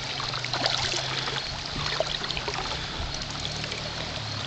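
Shallow stream water flowing and trickling steadily, with a few faint small splashes.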